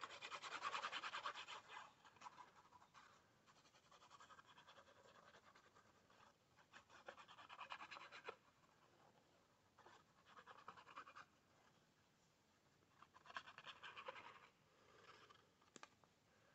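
Faint scratching of a liquid glue bottle's nozzle being drawn over cardstock as glue is squeezed out, in several short bursts, the loudest at the start.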